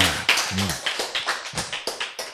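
A rapid, irregular run of light taps or clicks, several a second, with a short spoken response at the start and another about half a second in.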